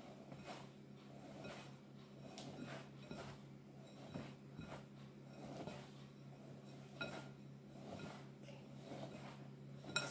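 Faint, soft rustle of flour and butter being rubbed between fingertips and sifted back down into a glass mixing bowl, with scattered light clicks and clinks against the bowl.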